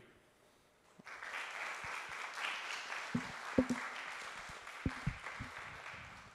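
Audience applauding, starting about a second in and slowly fading near the end, with a few dull low thuds over it.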